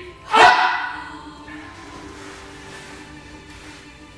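A single loud shout about half a second in, falling in pitch and ringing in the room, given on the count of three. After it, steady background music plays quietly.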